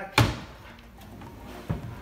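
A bed-expansion panel of a camper-van bed system knocking as it is slid back under the mattress: one sharp, loud clack just after the start, then a softer knock near the end.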